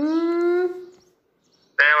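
A person's voice: one drawn-out vocal sound that rises in pitch and then holds for under a second, like a conversational 'mmm'.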